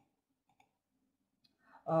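A few faint, sparse clicks over near quiet. A woman's voice starts just before the end.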